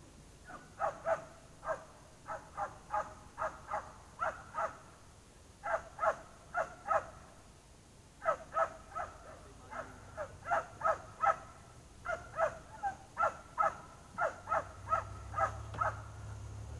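Crows cawing in runs of several calls, two or three a second, with short pauses between runs. A low steady hum comes in near the end.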